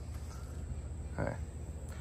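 A low, steady hum, with one softly spoken "okay" just past the middle.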